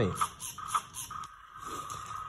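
Toy 4WD stunt RC car's small electric motors and plastic gears whirring as it is driven and turned on a tabletop, with a steady whine and quick rhythmic pulses that ease off about halfway through.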